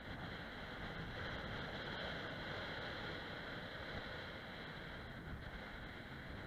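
Wind buffeting the microphone on an exposed ridge with a low, uneven rumble, over a steady high-pitched hiss that holds throughout.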